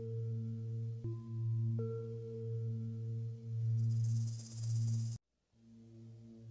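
Background music of sustained, drone-like tones: a steady low hum under a higher note that steps up in pitch twice. A bright hissing swell builds near the end, then everything cuts off abruptly for a moment and the drone comes back quieter.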